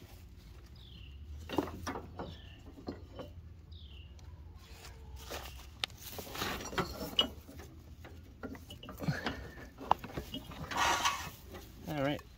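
Hands working an old riding-mower deck belt free of its pulleys: scattered clicks, knocks and rustling. Three short high squeaks fall in pitch in the first few seconds, and a longer rustle comes near the end.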